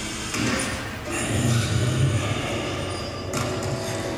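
Horror film soundtrack played over speakers in a gymnasium: a hissing wash with a low rumble that swells about a second in, and a sharp hit near the end.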